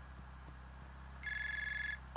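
A mobile phone's electronic ringtone starts a little past a second in and sounds steadily for under a second, an incoming call, over a low steady hum of the car.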